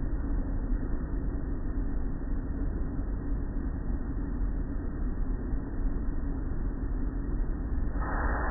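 Automatic tunnel car wash running, heard from inside a car's cabin: a steady, even wash of noise from water spray and the machinery working the cloth-strip curtain, with no distinct knocks or rhythm.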